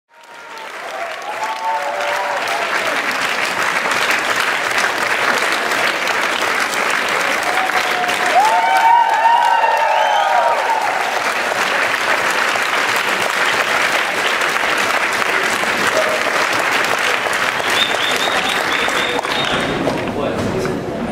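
A large audience applauding steadily, fading in over the first second, with a few voices shouting above the clapping around the middle.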